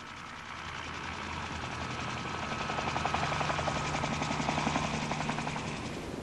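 Helicopter rotor chopping in quick, even beats over a steady engine whine, growing louder towards the middle and easing off near the end.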